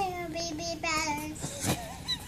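A toddler girl's high, sing-song voice, with long drawn-out vowels over the first second and a half, then fading to quiet room sound with a faint click.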